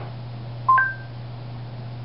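Google Home smart speaker chime: two short electronic beeps, a lower note then a higher one, about two thirds of a second in, over a low steady hum.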